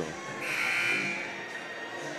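Scoreboard buzzer sounding for under a second, about half a second in, over music from the gym's speakers.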